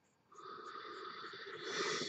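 A person's long, faint breath, swelling louder near the end.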